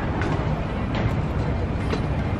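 Steady low rumble of street traffic, as of a heavy vehicle going by.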